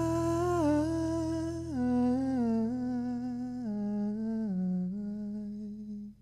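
Male singer's wordless vocal line into a microphone, held notes stepping down in pitch one after another, over a low sustained keyboard chord that fades away.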